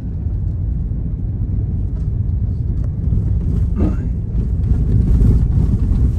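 Steady low rumble inside a moving vehicle's cabin: engine and tyres running on a snow-covered road. There is a brief higher-pitched sound about four seconds in.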